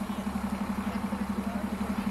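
A vehicle engine idling close by, a steady fast throb.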